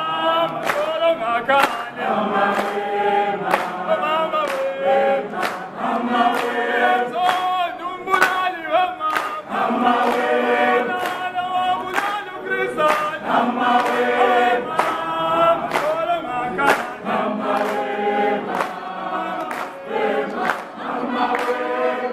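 A group of people singing together in several voices, with handclaps keeping time throughout.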